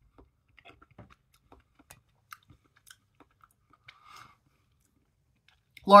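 Quiet chewing of soft, mushy tinned beef ravioli: a scattering of faint small wet clicks, with a brief soft rustle about four seconds in.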